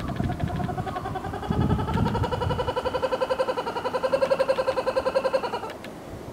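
A laughing kookaburra calling: its laugh, a rolling run of rapid, pitched pulses that swells in loudness and cuts off shortly before the end.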